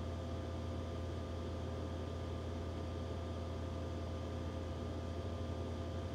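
Steady low hum with an even hiss and a few faint steady whine tones over it: the background hum of the room, with nothing else happening.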